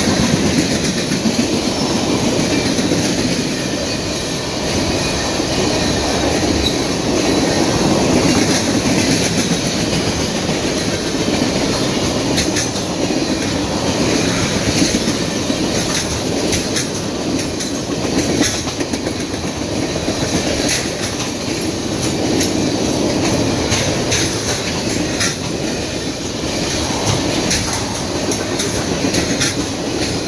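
Tank cars of a freight oil train rolling past close by: a steady rumble with the clickety-clack of wheels over rail joints and scattered sharp clicks from the running gear.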